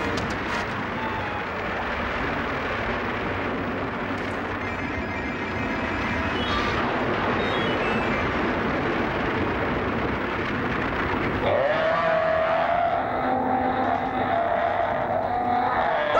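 Cartoon sound effect of a steady rumbling noise as a horned monster breaks up out of the rock. About eleven and a half seconds in, a sustained pitched tone joins it and holds.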